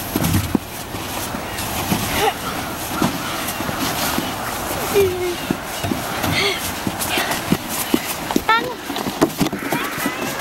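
Background chatter and shouts of several children over a steady outdoor hiss, with short scattered cries and small crunchy clicks.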